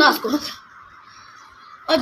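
A boy talking in Pashto, breaking off about half a second in and starting again near the end; in the gap there is only faint hiss.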